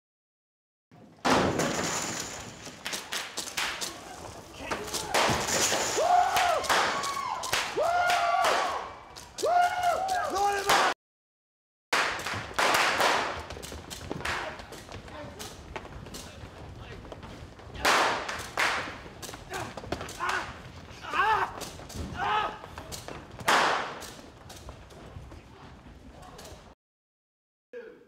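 Commotion of a staged fight: repeated thuds, slams and crashes mixed with people's voices, with a sudden cut to silence for about a second near the middle.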